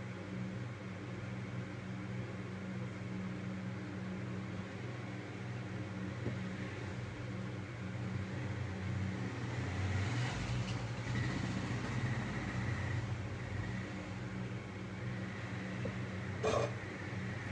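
Steady low mechanical hum of background machinery, with a faint high steady tone added for a few seconds about two-thirds of the way through.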